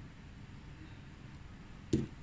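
One sharp knock near the end, a small plastic squeeze bottle of liquid paint set down on the table, over a faint low room hum.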